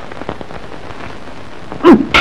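Steady rain falling, a continuous hiss with fine pattering. Near the end a short, loud vocal sound breaks in.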